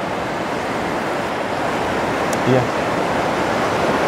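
A fast, shallow river running over rocks in rapids: a steady, even rush of water.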